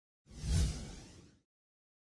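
A single whoosh sound effect for an animated logo intro, with a heavy low end, swelling quickly and fading away within about a second.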